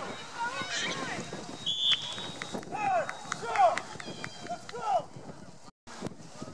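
People shouting and calling out during a flag football play, with several drawn-out falling calls. A short, high referee's whistle blast sounds a little under two seconds in, the signal that the play is over.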